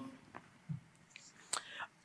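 Faint mouth sounds from a speaker at the microphone between sentences: a few soft clicks and a short breath about one and a half seconds in.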